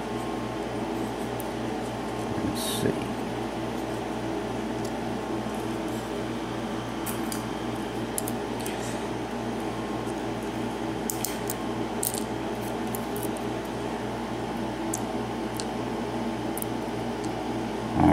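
Light metallic ticks of steel tweezers working inside a brass pin tumbler lock cylinder, picking out the top pins and springs, a few scattered small clicks over a steady room hum from an air conditioner or fan.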